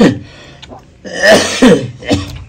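A young man coughing and gagging with throaty voiced sounds, a bout just ending as it begins and a second loud bout about a second in, as food and water catch in his throat while he is being fed.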